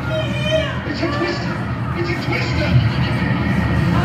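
Film soundtrack of a tornado scene played over a theatre sound system: excited voices shouting over a steady low rumble of wind.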